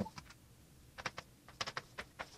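Chalk on a blackboard while writing: a handful of faint, short taps and ticks, most of them in the second half.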